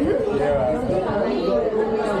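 Chatter of several people talking at once around a table in a busy room, the voices overlapping so that no single one stands out.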